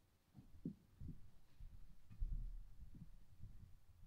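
Footsteps on a wooden floor: low, dull steps a few per second, with one heavier, deeper thump about two seconds in.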